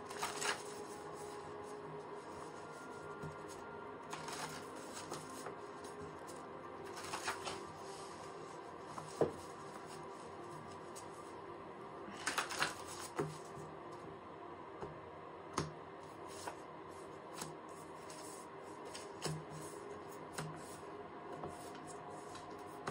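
A deck of oracle cards being shuffled by hand: intermittent short rasps and flicks as the cards slide against one another.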